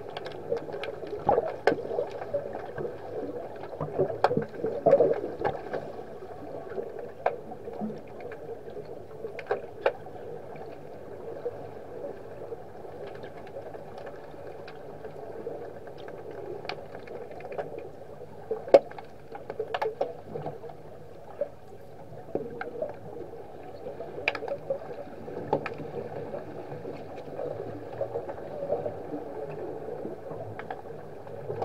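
Underwater hockey heard through an underwater camera: a steady muffled churning of water from the finned players, with sharp clicks and knocks of sticks and puck on the tiled pool floor scattered through. The clicks come thickest in the first few seconds, and one sharp crack stands out about 19 seconds in.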